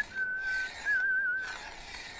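Whistling: one steady held note, then after a short break a wavering, warbling note.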